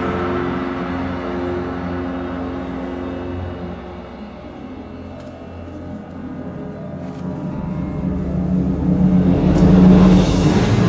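Symphony orchestra playing a dark instrumental passage: sustained low chords die away over the first few seconds, then a low rumbling swell builds steadily to loud by the end.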